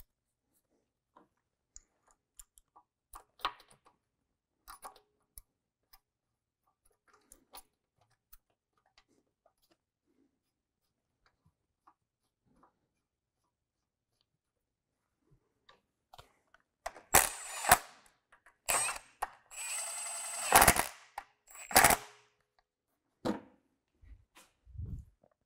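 Faint clicks and taps of parts being handled, then, from about seventeen seconds in, a cordless power tool run in four or five short bursts, the longest about a second, running in the bolts of the timing chain tensioner.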